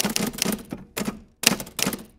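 Typewriter typing sound effect: rapid key clicks in a few short runs with brief pauses between them, matched to text typing onto the screen.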